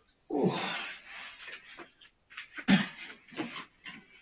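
A man out of breath from exertion, breathing hard and groaning: a loud voiced exhale about half a second in, then a run of short, uneven panting breaths and grunts.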